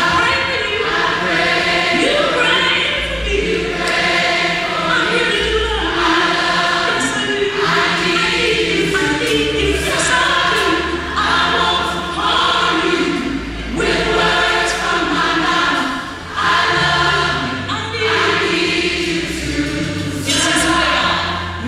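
Large robed choir singing together in harmony, phrase after phrase, with sustained low bass notes underneath.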